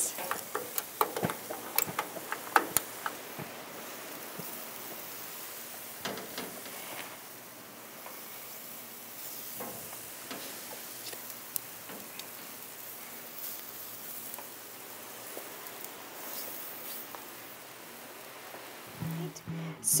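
Shrimp and vegetable skewers sizzling on a hot gas grill, with light clicks and clinks as the metal skewers are lifted off the grates, most of them in the first few seconds.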